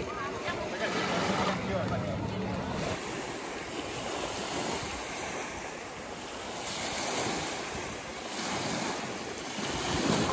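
Small sea waves washing up onto a sandy beach, the surf swelling and easing, with wind buffeting the microphone.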